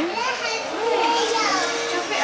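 Children's voices: high-pitched child speech and calling out, continuing through the moment.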